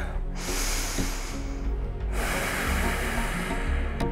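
A woman taking one deep breath, audible close on a headset microphone: a long breath in and a long breath out, each about two seconds, over soft background music.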